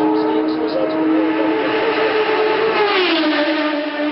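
Racing motorcycle at high revs: a steady, high engine note that drops sharply in pitch about three seconds in as the bike passes at speed, then carries on at the lower note as it goes away.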